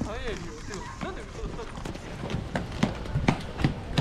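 Hard clomping footsteps of ski boots, a regular train of knocks about three or four a second that starts about two seconds in and grows louder, after a voice heard at the start.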